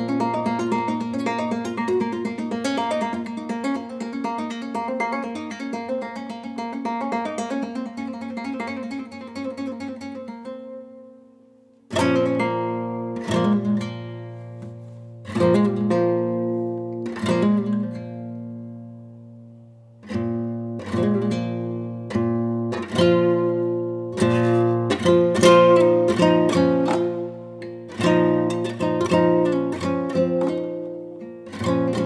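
Solo three-string nylon-string classical guitar. A run of rapid repeated picked notes fades away about ten seconds in. After a brief pause come ringing plucked notes and chords that sound and die away one after another, with a short lull a little past halfway.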